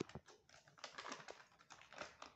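Near silence with faint, scattered light clicks and rustles of thin plastic packets being handled, a sharper click right at the start.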